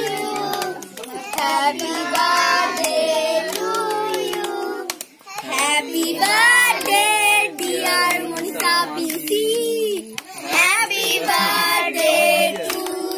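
A group of children singing a birthday song together while clapping along, the song running in phrases with short breaks about five and ten seconds in.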